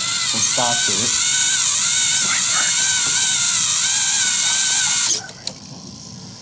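Small electric motors of a VEX robot whining under load, the pitch wavering up and down, then cutting off suddenly about five seconds in as the claw finishes its move.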